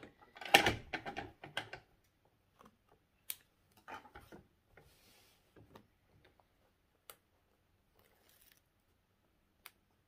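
Handling noises of double-sided tape and fabric: a burst of clattery knocks and rustles near the start, then scattered light clicks and a couple of brief scratchy rasps as the tape is pulled off its roll and pressed along the edge of a fabric panel.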